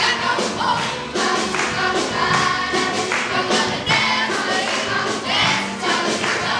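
Group of Year 7 schoolchildren singing together as a choir over musical accompaniment with a steady beat.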